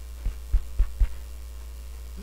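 Steady electrical mains hum through the sound system, with four quick low thumps about a quarter second apart in the first second.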